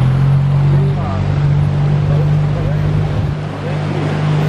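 An engine running steadily, a loud, even low drone, with voices faintly in the background.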